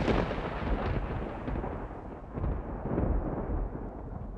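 A deep, thunder-like rumble dying away from a loud start, swelling twice more about halfway and three seconds in, then fading toward the end.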